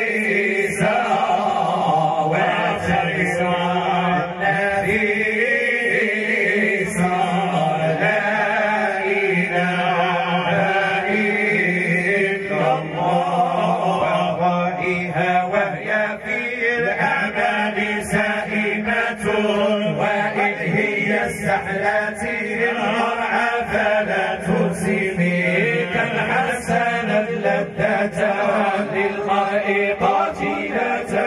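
A group of men chanting a devotional song in praise of the Prophet together, their voices amplified through microphones, with a steady low drone under the chant.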